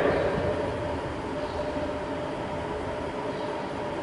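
Steady background noise of the room, a low hum and hiss with no speech, as the last of the voice dies away in the first second.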